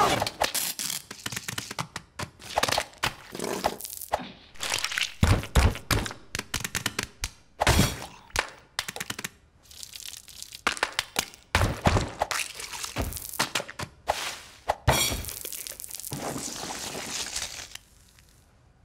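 Cartoon sound effects: a busy string of sharp cracks, knocks and thuds, with several heavier crashes spread through it and short quieter gaps between.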